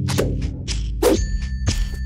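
A metallic ding struck about halfway through, its few clear tones ringing on for nearly a second, over a low sustained drone.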